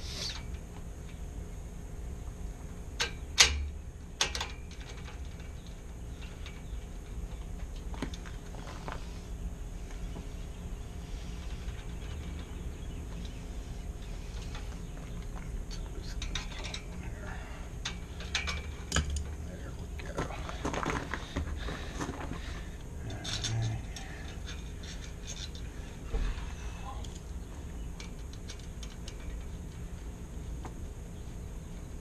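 Small metallic clicks and knocks of a brass profile cylinder and its key being worked into a mortise lock body, with a sharp knock about three seconds in and a busier run of small knocks in the second half, over a low steady rumble.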